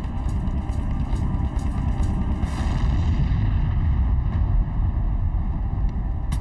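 Deep, steady rumble of a cinematic sound effect, with faint sustained tones above it, swelling slightly toward the middle.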